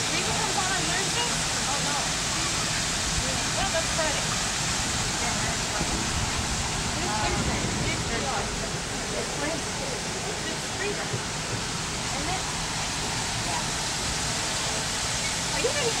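Steady rushing noise of rain and wet pavement, heard from an open-sided tram moving through the rain.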